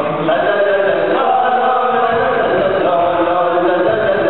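A group of voices chanting together in long held notes that step up and down in pitch.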